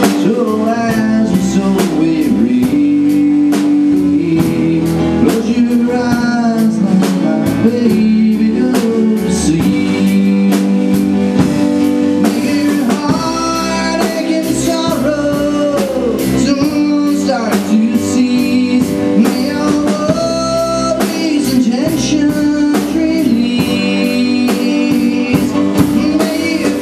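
A small live band playing a song: drum kit, guitar and keyboard, with held chords underneath and a melody line that slides up and down in pitch above them.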